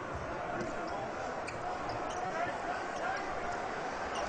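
Basketball being dribbled on the hardwood court, a few low bounces, under the steady noise of the arena crowd.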